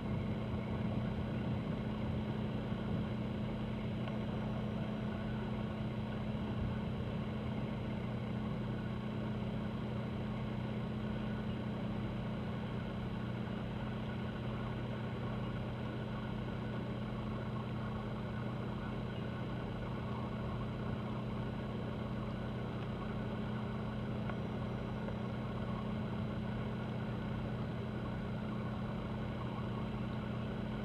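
Steady low engine drone from ships working in the harbor, a cruise ship and a tugboat, with an even background hiss.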